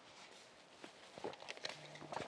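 Quiet room tone with a few faint, scattered soft taps and clicks, denser in the second half.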